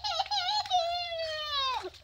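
A toddler crying: one long, high wail that sags slightly in pitch and breaks off near the end.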